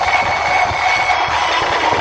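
Loud live stage sound through a PA system: a steady high-pitched tone held over a dense, noisy wash, without clear drumming or singing.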